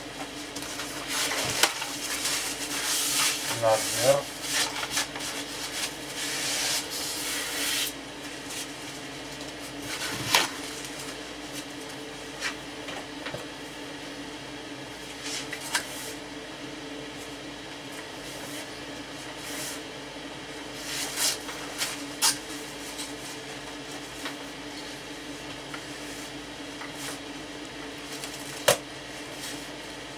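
A paper towel rubs and swishes over a wet wood-grain veneer sheet for about the first eight seconds. After that come only scattered single light knocks and clicks while the veneer is pressed down with a clothes iron, over a steady low hum.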